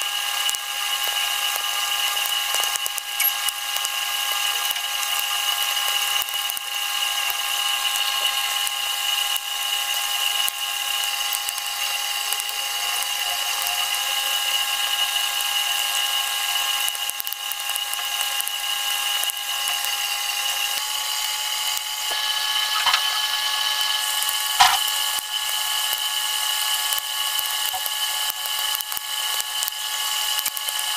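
A steady high-pitched electrical or mechanical whine, made of several fixed tones over a hiss, which shifts slightly in pitch about two-thirds of the way in. A single sharp click comes late on.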